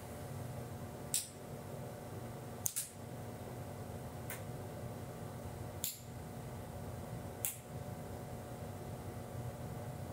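Quiet room tone with a steady low hum, broken by five faint single clicks about a second and a half apart, as the background light's colour setting is stepped from yellowish toward blue.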